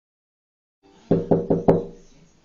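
Four quick knocks on a wooden door, about a fifth of a second apart, each with a short hollow ring from the door panel.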